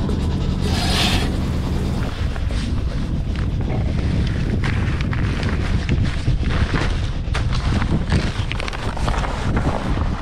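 Wind buffeting the microphone, with sailcloth rustling and crumpling as the mainsail is gathered and strapped on the boom. A low steady hum is there for about the first two seconds, then stops.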